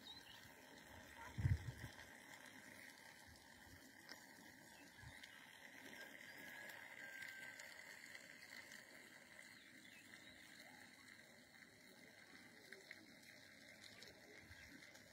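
Near silence: faint outdoor ambience, with one short low thump about one and a half seconds in.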